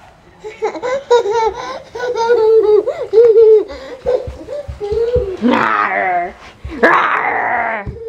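A toddler laughing and squealing in a long string of high giggles, loudest in two bursts near the end.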